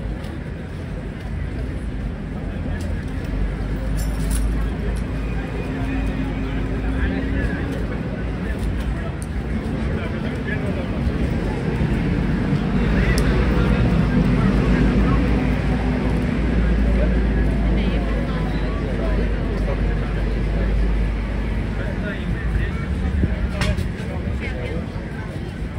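Busy street ambience: indistinct chatter of people over a steady low rumble of traffic, swelling a little in the middle.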